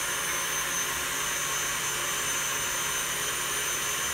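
KitchenAid Custom Metallic tilt-head stand mixer running steadily at an even pitch, its motor kneading a soft whole-wheat bread dough in a glass bowl.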